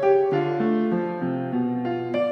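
Piano music: a melody of struck notes, a few each second, over held lower notes.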